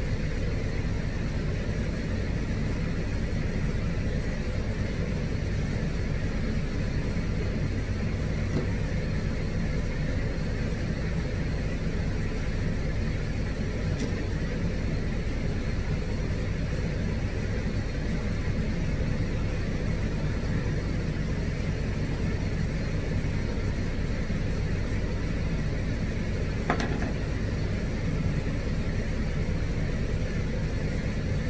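A steady low motor hum, with one brief click about four seconds before the end.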